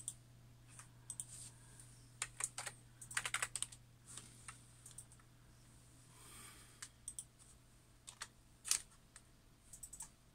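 Computer keyboard being typed on in short irregular bursts of key clicks, with pauses between them, while logging in to an online account.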